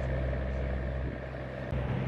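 Tour catamaran's engines running with a steady low hum, under an even rush of wake water and wind heard from the open deck.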